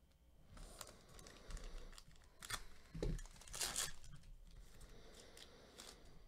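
Foil wrapper of a trading card pack being opened by hand: a series of short crinkling rustles and rips, the loudest about three and a half seconds in.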